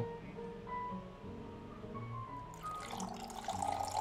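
A drink poured from a plastic shaker into a plastic cup over ice, starting about two-thirds of the way in as a steady hiss of running liquid. Soft background music plays throughout.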